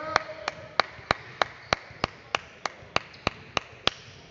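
Steady rhythmic hand clapping, about three sharp claps a second at a very even pace, echoing in a gym.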